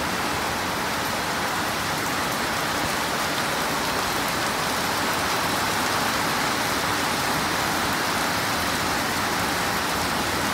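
Heavy rain falling onto a wet road and pavement: a steady, even hiss that does not change.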